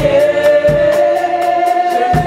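Congregation singing a gospel worship song, with one voice holding a long note that steps up in pitch about halfway through, over a steady beat.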